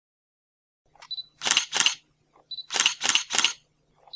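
Camera sound effect as an intro sting: a short high beep, then two shutter clicks, then another beep followed by three more shutter clicks, with a faint low hum underneath.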